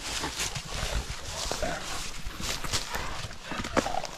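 Young brown bears play-fighting: irregular scuffling and rustling in dry leaves and grass, with short grunts and a sharp knock near the end. The sounds of rough play, not a real fight.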